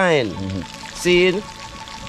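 A man's voice, an exclamation that slides steeply down in pitch, then a short vocal sound about a second in.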